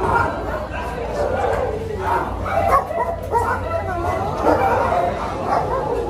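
Dogs barking in shelter kennels, with people's voices underneath.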